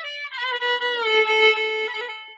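Solo violin playing a slow melody: long bowed notes that slide from one pitch to the next, the last held note starting to fade near the end.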